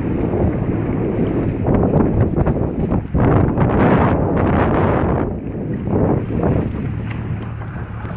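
Wind buffeting the microphone in uneven gusts, over the steady low hum of a motorboat's engine and the wash of choppy water.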